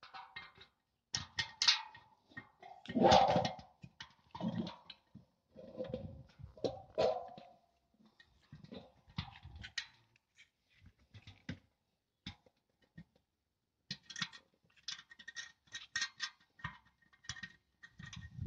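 Clicks, knocks and short scrapes of a satellite dish's steel mounting bracket and bolts being handled and fitted, with a louder scraping burst about three seconds in and a quick run of small metallic clicks near the end.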